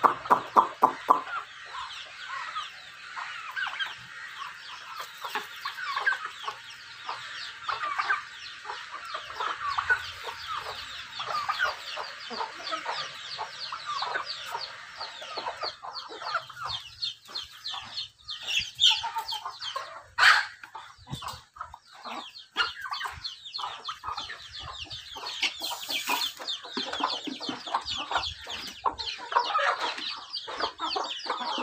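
A flock of chickens clucking and chirping continuously while they feed, a dense chatter of short calls. A single sharp click about twenty seconds in.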